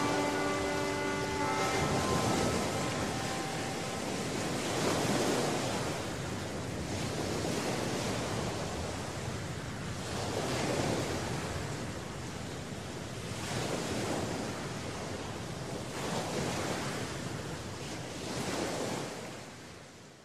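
Surf washing in and out, swelling about every three seconds and fading out near the end. The last notes of music ring out at the start.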